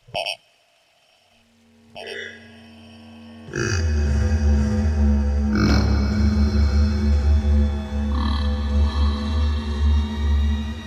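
A low, droning horror-film score swells in about three and a half seconds in and holds loud, a deep sustained drone under several higher steady tones. Before it come two brief, short sounds.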